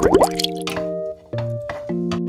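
Background music of held keyboard and guitar notes, with a quick cluster of rising bubbly 'bloop' sound effects right at the start. The music drops out briefly just after a second in.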